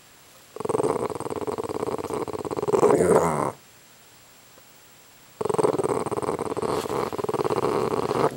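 Boston Terrier growling at a fly on the floor: two long, rough growls of about three seconds each with a short pause between them, each ending in a falling grumble.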